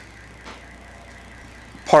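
A pause in a man's talk: only a faint, steady low hum of room tone, with a faint tick about half a second in, then his voice resumes near the end.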